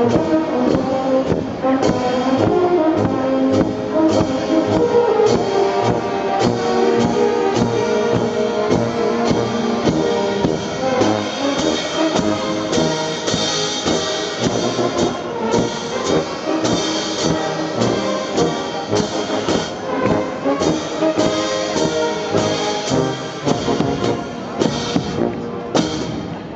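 Austrian brass band (Blasmusik) playing, with tubas loud and close, over a steady beat.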